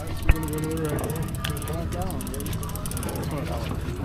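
Fishing boat's engine running steadily at trolling speed, with people talking on deck and a single sharp click about a third of a second in.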